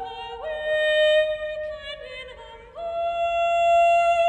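A solo soprano singing long, nearly straight-toned held notes in a large, echoing stone church. She slides up to a higher note about half a second in, dips lower around two seconds, then slides up again to a higher held note near three seconds in.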